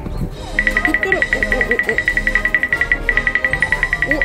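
Background music built on a rapid, high ticking pulse, starting about half a second in and breaking off briefly near the three-second mark before it resumes.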